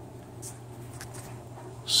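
Steady low hum with faint rubbing and a couple of light ticks as the camera is handled; a man's voice starts right at the end.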